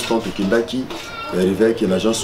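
A man speaking in a steady, animated voice.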